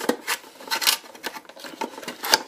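Cardboard box being handled and its flaps pulled open: a few irregular scrapes and rustles of card, the loudest just under a second in.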